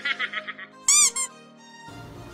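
Edited-in comic sound effect over faint music: a quick high-pitched chattering, then about a second in a loud squeaky pitch glide that rises and falls, with a smaller one right after.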